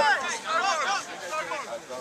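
Voices calling and shouting at a rugby match, with no words picked out.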